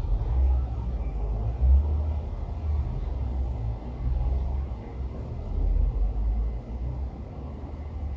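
A low, uneven rumble that swells and fades, loudest about two seconds in and again around six seconds.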